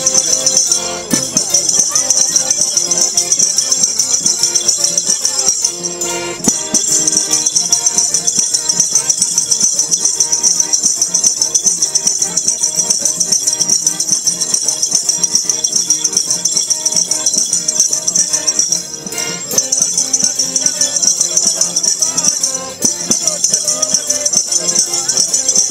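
Live traditional Marche folk song, a Pasquella: an elderly man singing lead to a diatonic button accordion (organetto) and a mandolin, with a tambourine's jingles shaken in a steady fast beat over everything.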